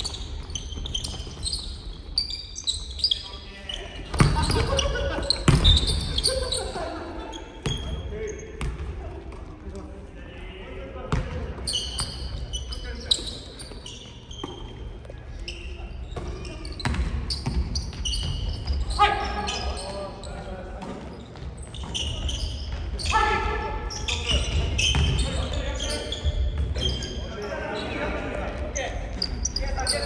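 Basketball game play on a hardwood gym floor: the ball bouncing, sneakers squeaking in short high-pitched chirps, and players calling out to one another, all in a large echoing hall.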